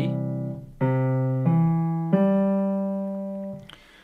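Piano playing a broken C major chord in the left hand below middle C. A C rings over at the start, then C, E and G are struck one at a time about two-thirds of a second apart, rising in pitch. The last note fades away near the end.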